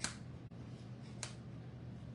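Two brief scratches about a second apart: a small hand tool picking through decoupaged paper to clear the openings in a small craft piece.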